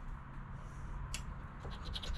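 A coin scraping the coating off a scratch-off lottery ticket in short, faint strokes, with a sharper scrape about a second in and a few more near the end.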